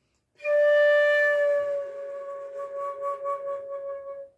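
Concert flute holding one long D, starting about half a second in. It is strongest at first, then softer and slightly wavering. The note is being bent downward toward C-sharp by moving the arms back and rolling the flute in, as a tone-bending exercise.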